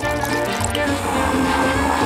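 Background music over liquid being poured into a blender jar of arugula leaves.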